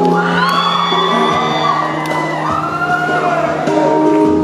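Live keyboard music with audience members whooping over it: one long rising-and-falling whoop at the start and a shorter one just past the middle, above steady held keyboard notes.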